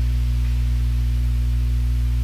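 Steady electrical mains hum: a low buzz with a stack of overtones, loud and unchanging.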